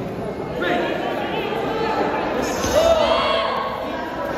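Several men shouting over each other in a large echoing sports hall during a Kyokushin karate bout, loudest about three seconds in, with dull thuds of bare feet and blows on the floor mats.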